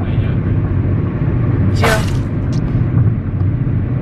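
Car cabin noise while driving: a steady low rumble of engine and tyres on the road, heard from inside the moving car.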